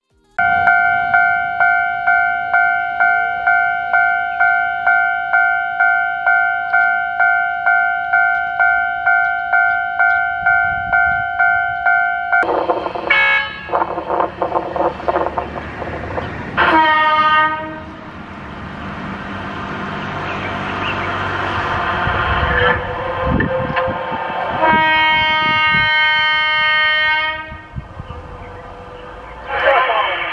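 Level-crossing warning bell ringing in a steady, even pulse of about two strikes a second, which stops abruptly about twelve seconds in. Then a train: two short horn blasts, a rising rumble of the train passing, and a longer horn blast near the end.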